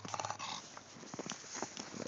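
An English bulldog making rough vocal noises while playing. A quick run of rasping pulses comes in the first half-second, then quieter sounds.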